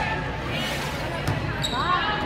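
Volleyball match in a gymnasium: players' calls and voices echo in the hall, with two sharp knocks a little past the middle, such as ball contacts or shoes on the hardwood.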